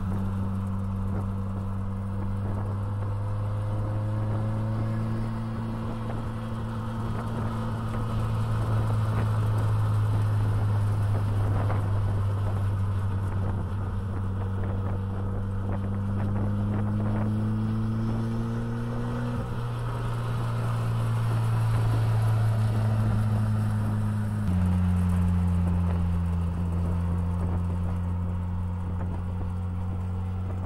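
A car engine running at a steady, low pitch, creeping slowly upward, with two sudden small drops in pitch in the second half.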